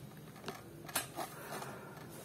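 Quiet room tone with a few faint clicks, one about half a second in and a sharper one about a second in.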